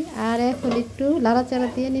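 A woman's voice talking, the loudest sound, over chicken pieces sizzling in oil in a wok on a gas flame.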